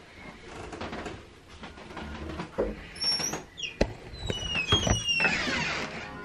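A door being opened and moved, its hinge squeaking in short high rising and falling squeaks, with a couple of sharp knocks and a brief scrape near the end. Handheld-camera handling noise runs underneath.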